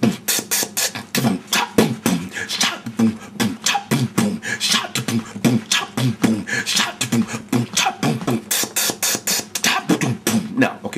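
A man beatboxing an old-school drum pattern with his mouth in a fast steady rhythm. Mouth kick-drum booms and snare sounds are mixed with hissy hi-hat cymbal strokes, the hi-hat made by sucking in air and cutting it off with the lips.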